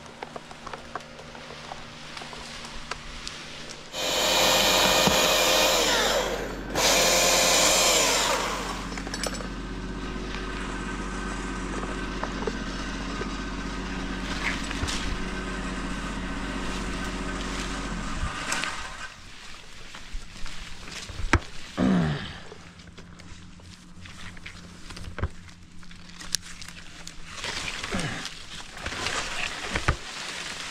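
Husqvarna T542i battery top-handle chainsaw cutting into a poplar limb, with two loud bursts of cutting about four and seven seconds in. The saw then runs steadily and stops about eighteen seconds in, followed by scattered knocks and clicks.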